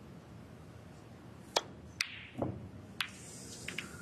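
Snooker shot: a cue tip striking the cue ball, then phenolic snooker balls clicking against each other and off a cushion. Four sharp clicks over about a second and a half, the first the loudest, with a duller knock among them and a few faint clicks near the end.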